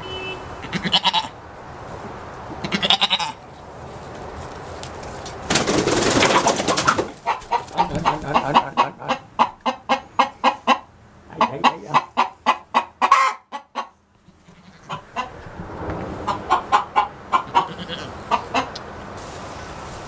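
Domestic hens clucking in quick series of short calls, about three a second, in two long runs with a pause between. A short burst of noise comes about six seconds in.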